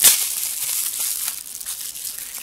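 Clear plastic bubble wrap crinkling and crackling as it is pulled off a small nail polish bottle, with a sharp crackle right at the start that then thins out into lighter rustling.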